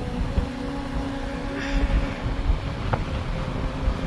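Strong gusty wind from an arriving storm buffeting the microphone: an uneven low rumble, with a faint steady hum underneath and a small click about three seconds in.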